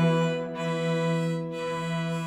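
Violin and cello holding long sustained notes in classical chamber music, with no new note played over these two seconds.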